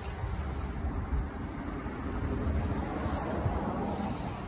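Steady low rumble with an even hiss over it, and a short brief hiss about three seconds in.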